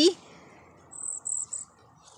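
Cedar waxwing fledgling giving three short, thin, very high begging calls in quick succession about a second in, as food is held to its bill.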